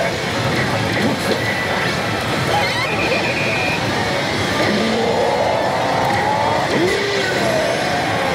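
Pachislot hall din: a dense, steady wash of machine noise, with the Oss! Salaryman Bancho machine's electronic effect sounds and voice snippets from its on-screen animation over it. A short high steady tone sounds about three seconds in.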